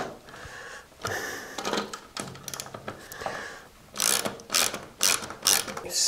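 Ratchet socket wrench clicking as a nut is tightened onto a quarter-inch bolt. It is soft and irregular at first, then a quick run of sharp clicks over the last two seconds.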